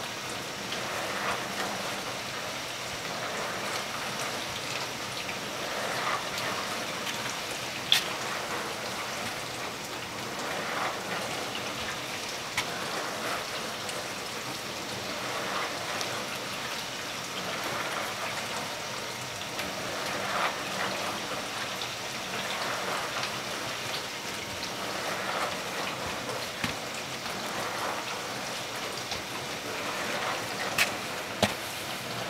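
A steady hiss like rain throughout, with soft footsteps of rubber-soled sneakers on a tile floor every few seconds and a few sharp clicks, the loudest about eight seconds in.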